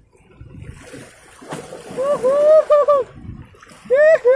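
Waves washing over shore rocks, then a person's voice calling out loudly twice, long drawn-out high-pitched calls with no clear words, about two seconds in and again near the end.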